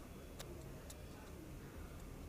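Faint low hum with two short, sharp clicks about half a second apart in the first second.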